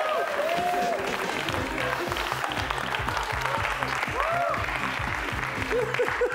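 Studio audience applauding with laughter, and music with a steady bass line coming in about a second and a half in.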